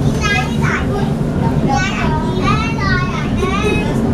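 Steady low running rumble of a moving MRT train heard from inside the carriage, with high-pitched children's voices calling and chattering over it several times.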